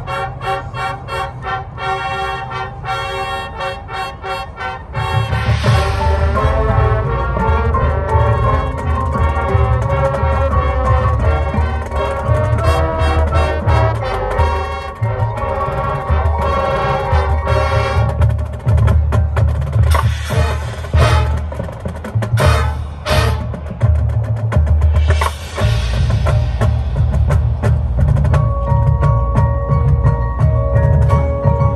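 High school marching band playing the opening of its field show, brass and percussion together. A quieter opening of pitched notes over a ticking rhythm gives way about five seconds in to the full band, much louder with heavy bass drums under the brass.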